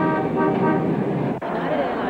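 Car horns honking over city traffic noise, several short blasts of steady pitch. About a second and a half in it cuts suddenly to the murmur of a crowd.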